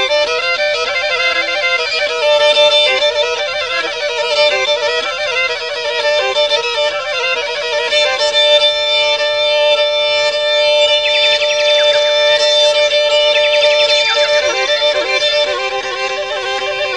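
Instrumental Black Sea (Karadeniz) folk music led by a bowed fiddle: a fast-running melody, then from about halfway long held notes broken by quick trills.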